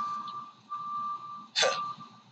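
A man's laugh trailing off, then a short breathy huff of laughter about a second and a half in. A steady high tone runs underneath and drops out briefly about half a second in.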